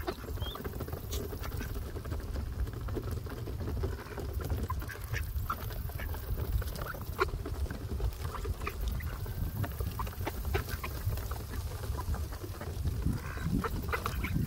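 Mallard ducks feeding on seed scattered on a wooden dock: many quick, irregular bill pecks and taps on the boards, over a steady low rumble.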